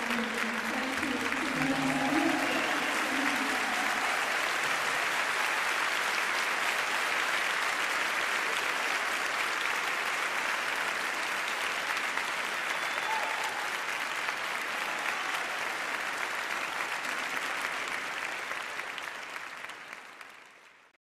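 Audience applauding steadily, the clapping fading away near the end.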